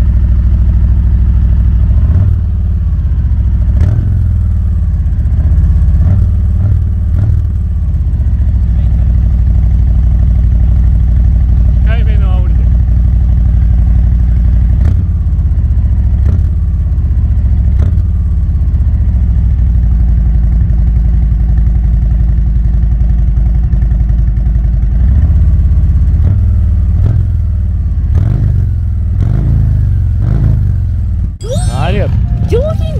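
Harley-Davidson Road Glide Special (FLTRXS) V-twin running through its twin exhaust pipes, blipped and revved several times between spells of idle; a deep, thick exhaust note.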